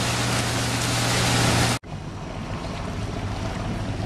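Ski boat engine running steadily under a loud rush of spray and water while a skier is towed on the boom. About two seconds in it cuts off abruptly to a quieter engine hum with softer water sounds.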